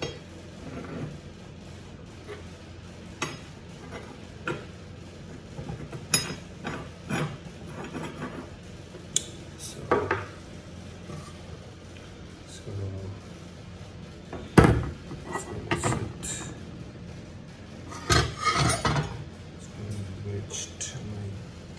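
Machined metal handbrake parts, a lever, aluminium spacers and a brass bushing, clinking and knocking against each other and the tabletop as they are handled. The taps are scattered, with one sharp knock about two-thirds of the way through and a short run of rattling clinks near the end.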